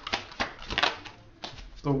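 Tarot cards being shuffled and handled, a quick, irregular run of sharp clicks and slaps. A woman's voice begins a word near the end.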